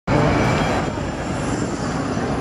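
Orion VII city transit bus engine running as it approaches through street traffic, a loud steady rumble that starts abruptly.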